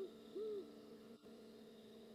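Faint owl hooting: two short hoots, the second about half a second in.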